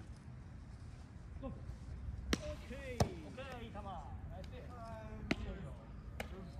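Three sharp smacks of a baseball into leather gloves, the loudest about three seconds in, as a pitch is caught and the ball is thrown around, with players shouting across the field between them.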